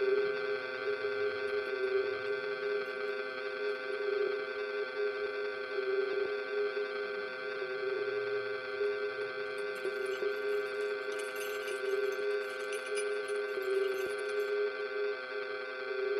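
Sustained electronic drone from laptop and keyboard: a chord of steady held tones, strongest in the low middle, that does not change. A faint crackling texture sits high above it from about ten to fourteen seconds in.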